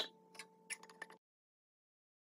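Espresso machine with a steel thermos bottle under its spout: a sharp click, then a faint steady hum with a few light clicks for about a second, cutting off suddenly.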